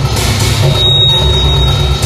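Loud electronic noise music from synthesizers and drum machines: a dense, heavy bass drone and pulse, joined just under a second in by a thin, steady high tone.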